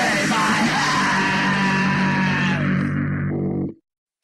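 Hardcore punk band recording: yelled vocals over distorted guitar, ending on a held, ringing chord that cuts off to silence near the end.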